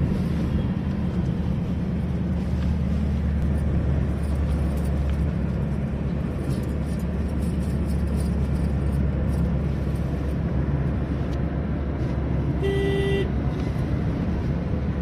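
Steady engine and tyre noise heard inside a Suzuki car's cabin at road speed, with one short car-horn toot near the end.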